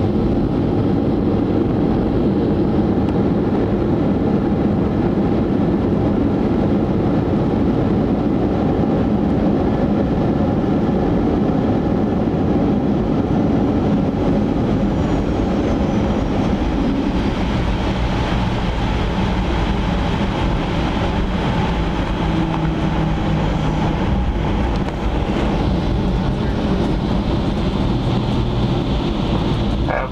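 Cabin noise of a Boeing 737-800 rolling along the ground after landing: the steady rumble of its CFM56 jet engines and wheels, easing a little in the second half. A faint high whine falls in pitch about halfway through.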